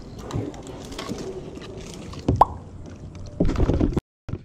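A small plastic kayak being paddled and handled: scattered light knocks and clicks, a short high squeak about two and a half seconds in, and a louder rush of noise near the end.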